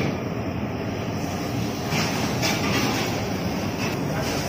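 Commercial kitchen background noise: a steady low rumble with a few light knocks.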